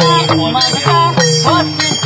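A set of six clay-pot drums played by hand as a Burmese chauk lone pat: a quick run of about four strokes a second, each a short pitched note that bends in pitch, with a steady high ringing above them.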